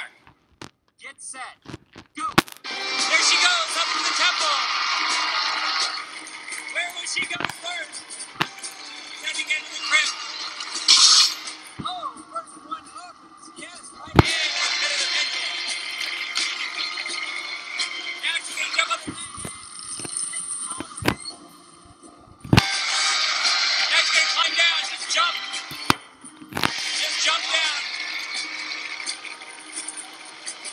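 Game-show soundtrack: background music under bursts of shouting and cheering voices, loudest a few seconds in, again around the middle and through the last quarter, with scattered sharp knocks in the quieter gaps.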